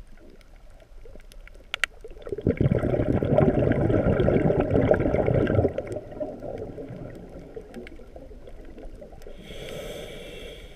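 Underwater breathing of the diver holding the camera: a long, bubbly exhalation lasting about three seconds, then a hissing inhalation starting near the end.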